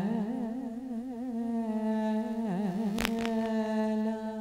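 A woman singing solo into a handheld microphone with no accompaniment. She draws a long note through wavering ornaments, then settles on a steady held pitch. Two sharp clicks come about three seconds in.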